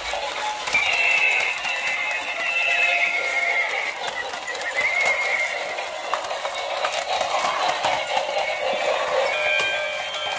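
Battery-operated walking toy horse playing recorded neighing and hoof clip-clop sounds through its small built-in speaker, over the clicking of its moving plastic legs.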